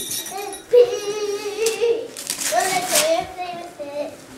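A young child's high voice holding long, drawn-out sung notes, the second higher than the first, with a sharp tap just before the first note. Wrapping paper crackles and tears as a gift is unwrapped.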